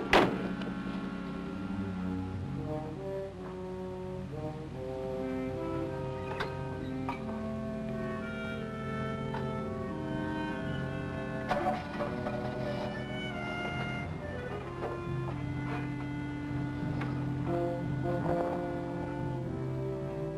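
Orchestral film score with held brass and low bowed-string notes, shifting slowly from chord to chord. A single sharp thump sounds right at the start.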